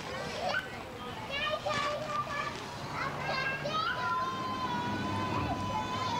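Children playing, their high-pitched voices calling and squealing without clear words; from about four seconds in one child holds a long, steady high note.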